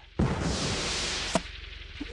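Cartoon sound effect of a harpoon gun firing: a sudden loud rushing whoosh lasting about a second, cut off by a sharp click, then a fainter hiss.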